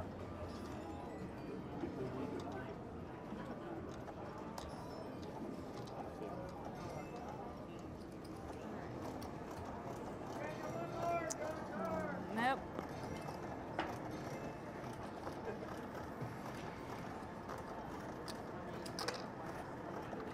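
Casino floor ambience: a steady murmur of distant voices and machines, with a few sharp clicks of cards and chips handled on the felt table. About halfway through, a short pitched sound slides down in pitch.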